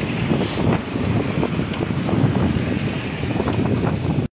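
Wind buffeting a handheld phone's microphone, an irregular rumble, over street noise.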